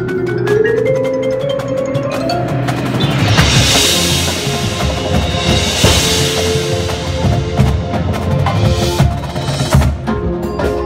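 Drum corps percussion section playing: marimbas and vibraphones with a pitched line rising over the first couple of seconds, then a bright cymbal wash from about three to six seconds in. Dense drum strokes from the snares, tenors and bass drums run underneath from about three seconds on.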